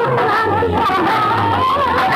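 Loud music with a wavering, high vocal-style melody over a low bass, played through a bank of metal horn loudspeakers.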